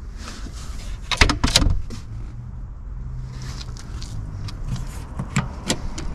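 Sharp clicks and knocks from handling around a car's open trunk, loudest about a second in, followed by a low steady hum lasting a couple of seconds and a few lighter clicks.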